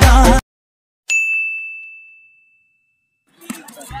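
Intro music cuts off, then a single high bell-like ding rings out about a second in and fades away over about two seconds. Outdoor background noise and voices come in near the end.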